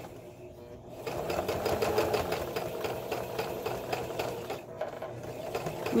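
Domestic electric sewing machine straight-stitching fabric, its needle running in a fast, even rhythm that picks up about a second in.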